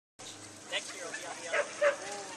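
A dog barking: two sharp, loud barks in quick succession about a second and a half in, over background voices.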